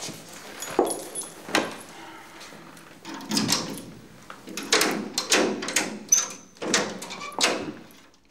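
A key being turned in an apartment door lock and the door handle worked: a series of metallic clicks and rattles, sparse at first and coming thick and fast in the second half. The lock turns normally; it is not broken.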